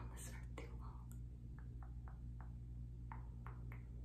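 Quiet pause in soft-spoken speech: a low steady hum with a handful of faint, short clicks spread over the second half.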